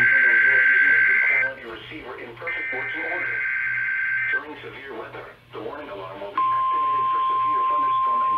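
NOAA Weather Radio weekly test heard through a receiver's speaker. Two bursts of the fax-like warbling SAME digital header, each about two seconds long, are followed about six seconds in by the steady single-pitch 1050 Hz warning alarm tone. A broadcast voice talks underneath.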